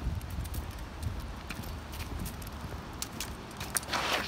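Footsteps of a person and a leashed dog on a dirt path strewn with dry leaves: soft steady thuds, then a few light clicks and a short rustle near the end.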